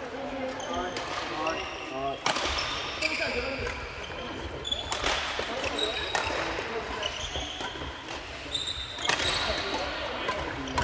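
Badminton play across a gym hall: a few sharp racket strikes on shuttlecocks ringing in the hall, short high squeaks of sneakers on the wooden court floor, and players' voices in the background.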